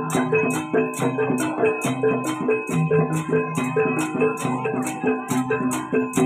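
Javanese jaranan (kuda lumping) gamelan music: metallophones play a repeating melody of short notes over drums, with a high cymbal-like hit about twice a second.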